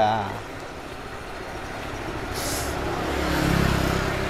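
A motor vehicle passing on the road, its low engine rumble building over the last two seconds.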